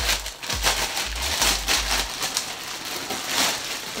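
Packaging crinkling and rustling as it is torn open and a garment is pulled out, with a few low handling bumps in the first two seconds.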